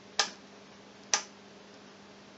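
Two sharp clicks about a second apart from the rotary selector switch of a capacitor checker being turned from one position to the next, over a faint steady hum.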